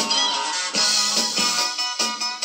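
Vinyl record playing through the turntable and speakers of a Matsui CDM 707K music centre, music running continuously; the turntable is set to the wrong speed.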